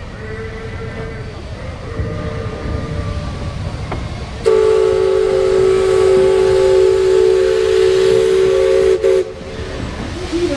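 Paddle-wheel riverboat's steam whistle blowing one long, loud chord of several notes for about four and a half seconds, starting about halfway through and cutting off suddenly near the end.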